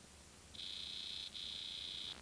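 High-pitched electronic test tone sounding with video colour bars, starting about half a second in and steady apart from one short break near the middle, over a faint hum and tape hiss.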